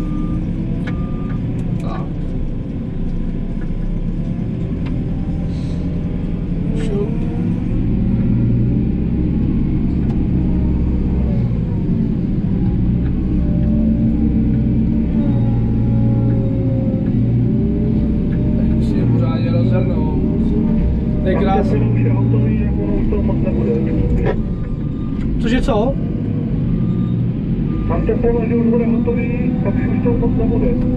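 Diesel engine of a heavy farm machine heard from inside its cab, working under load with its revs rising and falling. It grows louder over the first several seconds.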